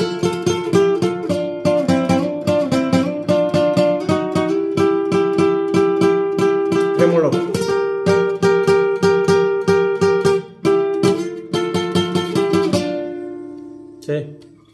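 Nylon-string classical guitar playing a lead melody (requinto) in F major with rapid tremolo picking, each note sounded as a fast run of repeated plucks. The playing breaks off briefly about ten seconds in, and the last note rings out and fades near the end.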